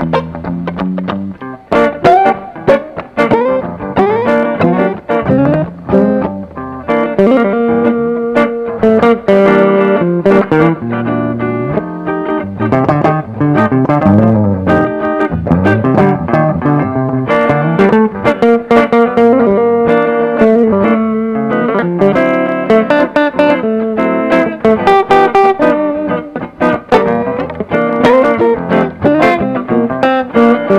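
Two electric guitars, one a Fender Stratocaster, playing a blues duet together through amplifiers, with dense picked lines and bent notes.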